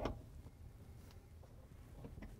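Quiet room tone with a faint low hum and one faint tick about a second in.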